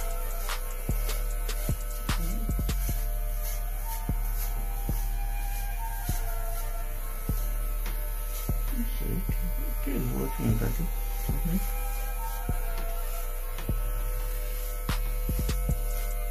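Corded electric hair clippers running with a steady low buzz as they cut short hair, over background music with a regular beat.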